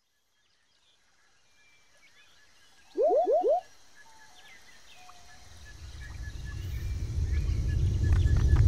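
Rural ambience sound effect with faint bird chirps, broken about three seconds in by a loud animal call of four quick rising notes. From about five seconds a low earthquake rumble sets in and builds steadily louder.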